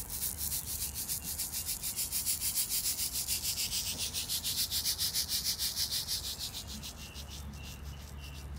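A hand rattle or shaker shaken in a fast, even rhythm of about nine rasping strokes a second. It swells, then fades away near the end.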